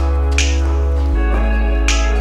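Instrumental hip-hop backing music: a deep held bass that shifts to a new note about a second in, with a sharp snap about every second and a half.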